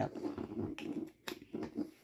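Handling noise from a small plastic wall charger turned over in the hand: a few short sharp clicks over a faint rustle.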